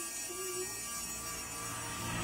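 Faint background music, with a short sung or played note early on, over a steady low electrical hum.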